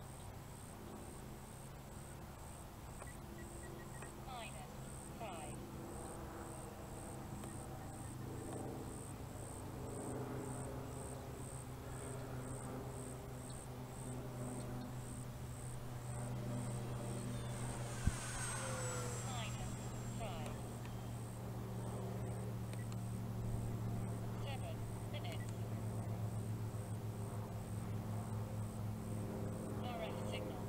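Electric motor and propeller of a foam radio-control P-51 Mustang in flight: a steady drone that slowly grows louder, with a higher whine falling in pitch about two-thirds of the way through as the plane passes. A single sharp click comes at the same moment.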